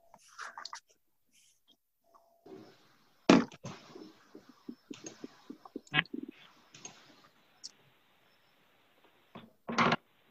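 Open-microphone noise on a video call: a faint hiss with scattered small clicks and knocks, the loudest a sharp thump about three seconds in, another at about six seconds and a third near the end.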